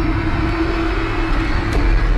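A low, steady rumble with a single held tone over it: a dark drone from a horror-film trailer's soundtrack.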